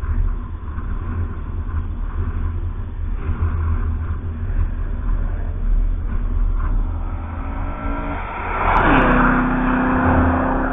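A car at speed on the circuit approaching and passing close by near the end, its engine note building over a couple of seconds and dropping in pitch as it goes past, over a steady low rumble.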